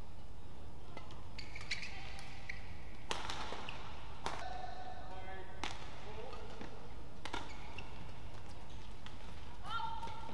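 Badminton rally: a shuttlecock struck back and forth by rackets, a sharp hit about every second and a half, with short squeaks of court shoes between the hits.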